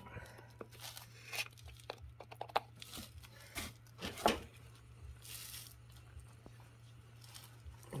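Faint, scattered clicks and scrapes of hands working at a lawn tractor's front wheel hub and cap, a slightly louder click about four seconds in, over a steady low hum.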